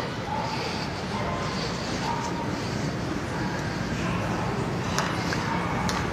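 Large arena crowd cheering and applauding steadily, with scattered shouts and whistles, and a couple of sharp clicks near the end.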